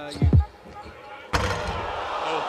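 A basketball dribbled twice in quick succession on a hardwood court, the bounces ringing in the arena. A little past halfway, a steady wash of arena background noise comes up suddenly.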